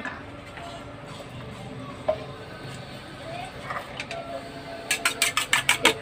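Low room background with faint voices. About five seconds in, a spoon or fork starts beating egg in a glass bowl: a quick, even run of clicking taps.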